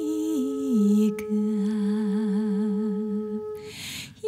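A woman's voice, close to humming, sliding down in steps to a low note and holding it with a slow vibrato, over a steady held note that does not waver. Both fade out near the end, and there is a small click about a second in.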